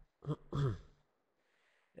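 A man's short wordless vocal sounds about half a second in: a brief throat-clearing or hesitation noise that falls in pitch. Near silence follows until he speaks again.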